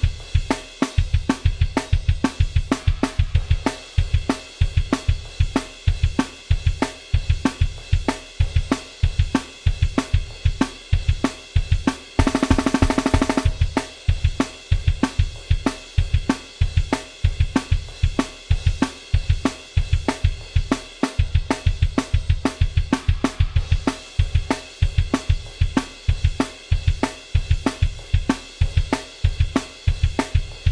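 Programmed stoner rock drum beat at 190 bpm played on a sampled drum kit (Superior Drummer): kick drum, snare, hi-hat and cymbals in a steady, driving pattern. About twelve seconds in, a fast drum roll fill lasts about a second before the groove carries on.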